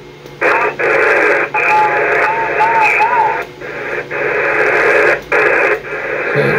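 Yaesu FT-991A transceiver's speaker putting out HF band static in lower sideband, a steady hiss with short drop-outs as memory channels are stepped through. A wavering whistle of a signal comes through about two to three seconds in.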